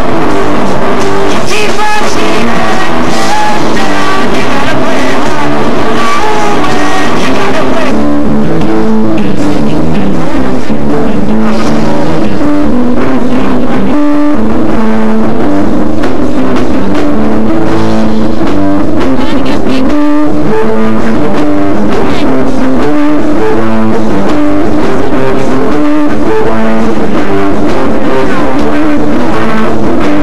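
Loud live rock band music with guitar and drums, played continuously; the recording is close to its maximum level throughout.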